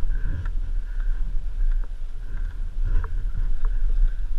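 Dirt bike engine idling with a steady low, uneven rumble, with a few light clicks.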